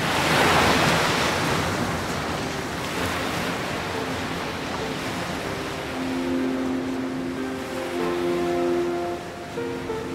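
Stormy sea waves as a sound effect, a wash of surf that swells just after the start and slowly thins out. Soft music with long held notes comes in partway through and takes over near the end.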